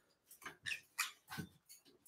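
A young parrot making a few faint, short squeaks and chirps, spread over two seconds, as she gets fussy and thirsty.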